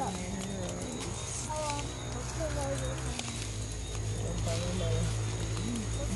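People talking quietly nearby in short, broken phrases, over a steady low hum.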